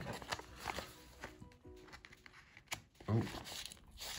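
A taped paper envelope being handled and pried open: light crinkles and small taps, over faint music.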